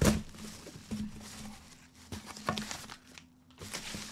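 A cardboard box and its paper packing being handled and opened by hand: rustling and crinkling with a few sharp knocks, the loudest right at the start.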